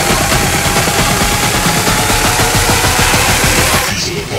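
Loud electronic dance music in a DJ mix: a dense, full passage driven by rapid, closely packed hits.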